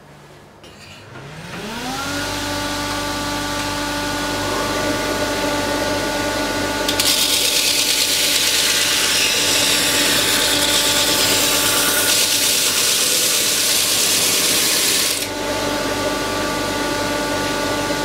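Homemade 400 mm disc sander's electric motor switched on, spinning up over about a second, then running with a steady hum. From about seven seconds in a wooden block is pressed against the sanding disc, adding a loud hiss of abrasive on wood for about eight seconds, after which the motor runs on alone.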